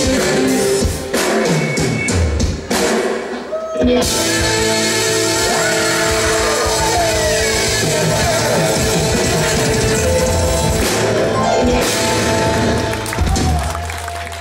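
A live rock band playing a song on drum kit and guitars. The music dips briefly about three to four seconds in and fades near the end.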